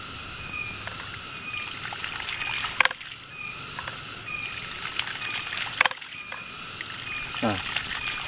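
Water spurting and hissing out of the open brass waste valves of a hydraulic ram pump, with a sharp clack as a valve slams shut about three seconds in and again about three seconds later. The pump is being primed by hand until it cycles on its own.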